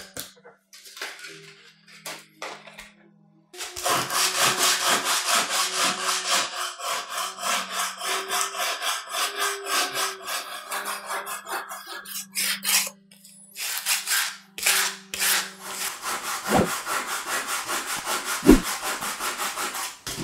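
Hand-sanding a wooden knife handle with sandpaper on a sanding block: a long run of quick back-and-forth rasping strokes that starts a few seconds in, after a few light taps. A couple of dull knocks come near the end.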